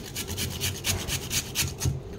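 Raw potato being grated on a handheld metal grater with a plastic frame: a quick run of rasping strokes.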